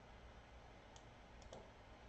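Near silence with a few faint clicks about a second in, from the computer being worked by hand.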